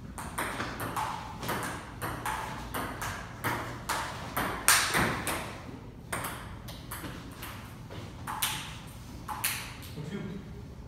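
Table tennis ball clicking off paddles and the table in a rally, a quick series of sharp clicks about two a second, the loudest nearly five seconds in.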